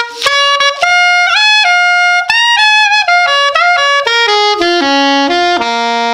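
Curved soprano saxophone playing a quick jazz line built on the C minor seventh arpeggio (C, E-flat, G, B-flat), stepping up and down over about fifteen notes and ending on a low C held for about a second.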